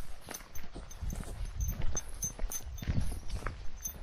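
Footsteps of people and a small dog walking on a gravel track: irregular crunching steps close by, with a low rumble underneath.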